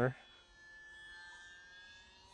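Faint, steady whine of a small electric RC plane's motor and propeller in flight, a few thin tones that drift slightly in pitch. A spoken word ends just as it begins.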